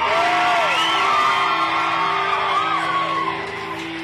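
Rock band playing live, holding a steady chord that rings on, with a voice whooping and yelling over it.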